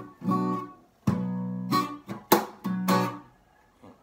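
Acoustic guitar strumming a B minor chord in a reggae beat pattern: a string of short chord strums, some with sharp percussive attacks. The strumming stops near the end.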